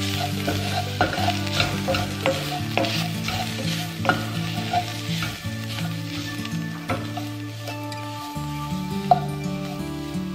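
Diced onions and spices sizzling in oil in a stainless steel pot while a wooden spatula stirs them, its scraping and clicking against the pot scattered through the steady sizzle.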